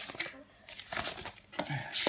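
Soft rustling and small clicks of objects being handled, with a brief voice sound near the end.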